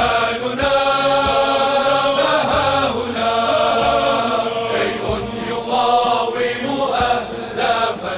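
Chanted vocal music with long held notes.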